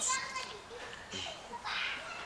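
Faint chatter of young children in the background, with a short hushed, breathy sound near the end.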